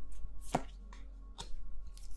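Tarot cards being handled and shuffled by hand: a few sharp card clicks and taps, the strongest about half a second in.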